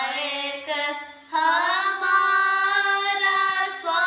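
Children singing Sikh kirtan, a Gurbani shabad in raag Bhairo, over a steady low drone. One sung phrase ends about a second in, and after a short breath a long, held phrase follows.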